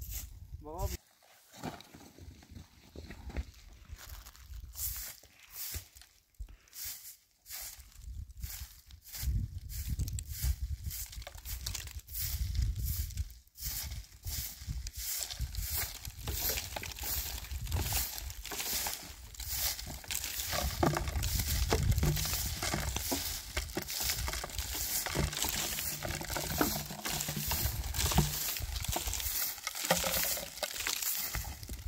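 Straw hand broom sweeping dry, stony dirt ground in repeated brushing strokes, about two a second.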